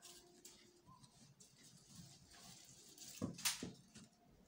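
Faint rustling of printed fabric being smoothed and folded by hand on a table, with a brief louder brushing rustle about three and a half seconds in.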